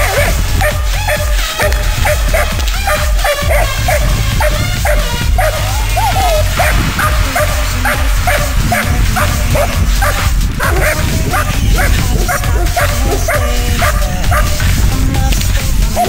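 Shepherd-type dog barking repeatedly and aggressively at a helper during protection work, over background music with a steady bass beat.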